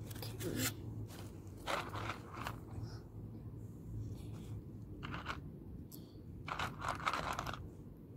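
Dry pasta, penne and lasagna sheets, rattling and scraping as a small hand picks pieces out of a plastic tub and sets them down, in short separate bursts with a longer run near the end.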